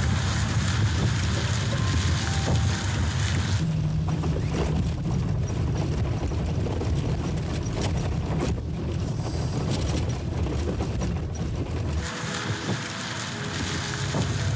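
Fiat 126p's air-cooled two-cylinder engine and tyres on a gravel road: a steady low rumble of road and engine noise, with wind on the microphone. The sound changes character about four seconds in and again near the end.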